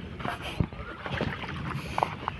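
Water sloshing and splashing as a person wades through a shallow pond dragging a fishing net, with faint voices in the background.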